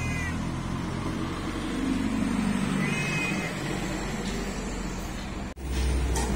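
Cat meowing twice, once right at the start and again about three seconds in, each call short, over steady background noise.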